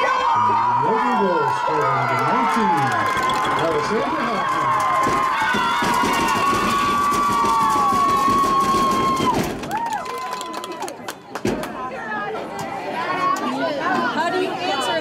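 Sideline spectators shouting and cheering, many voices at once. A long steady high tone is held over them and cuts off about nine and a half seconds in, leaving quieter voices.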